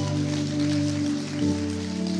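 Background music of long held chords with no beat, moving to a new chord about one and a half seconds in.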